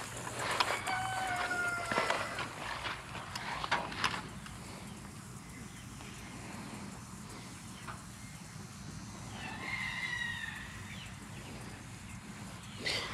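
A farm animal calling in the distance: one drawn-out pitched call about a second in and a shorter call near the end, with a couple of soft knocks in between.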